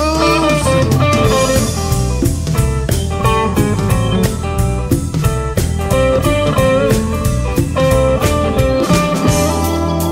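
Blues-rock band playing an instrumental break: electric guitar lead lines, some of them bent, over a drum kit with a steady beat and a bass line.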